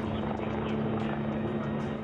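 Helicopter engine and rotor noise, a steady drone.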